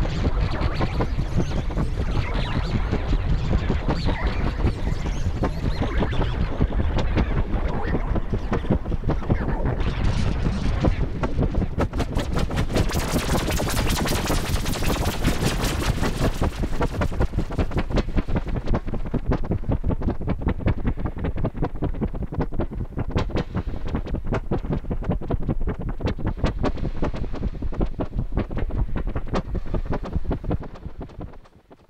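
Novation Summit synthesizer played on a single patch: a dense, noisy, rapidly pulsing texture with heavy low end. Its top end opens up bright for a few seconds about halfway through, then closes again.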